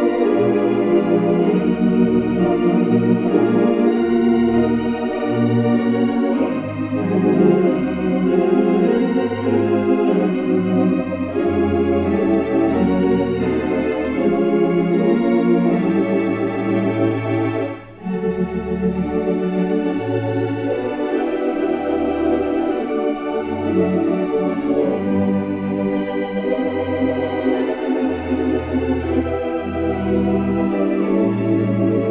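Solo organ playing gospel hymn music: full held chords over low bass notes that change every second or so, with a brief pause about 18 seconds in.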